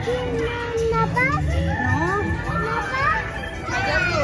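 Children's voices and chatter, several high voices overlapping, with faint music underneath.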